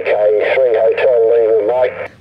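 A voice heard on lower sideband through a Yaesu FT-817 transceiver's speaker, a distant station calling. It sounds thin and narrow, with a faint steady hum beneath it.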